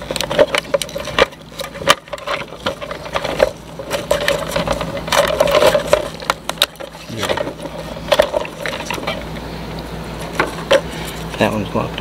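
Irregular clicks and knocks of hard plastic as a fuel pump module assembly is handled and worked over with a small flathead screwdriver.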